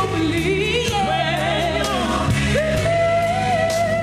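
A ballad sung live over instrumental accompaniment. About two and a half seconds in, the voice rises to a long held note.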